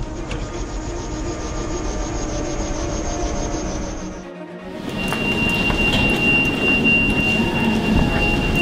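Ambulance patient compartment on the move: steady engine and road rumble with rattling. About four seconds in it dips, then a louder, rougher rattling sound follows, with a steady high whine held for several seconds.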